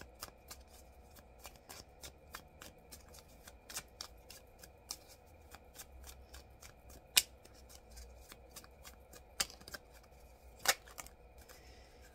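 A deck of tarot cards being shuffled by hand: a quick, continuous run of light card clicks and flicks, with a few sharper snaps in the second half.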